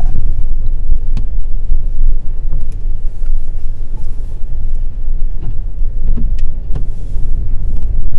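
Car driving slowly over snowy pavement, heard from inside the cabin: a steady low rumble of road and engine noise, with a few faint clicks.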